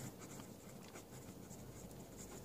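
Pencil writing on lined notebook paper: faint scratching of the lead as a word is written out.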